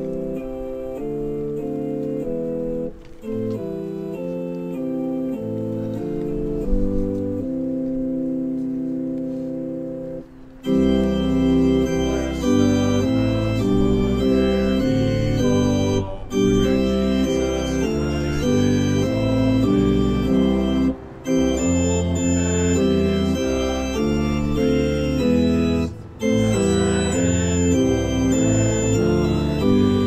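Organ playing a hymn. A lighter introduction gives way, about ten seconds in, to a fuller sound with bass notes, broken by short pauses between lines about every five seconds.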